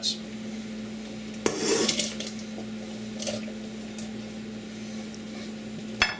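Diced chayote and green squash tipped from a plate into a pot of broth: a few knocks and scrapes of plate against pot and pieces dropping in, loudest about a second and a half in, over a steady low hum.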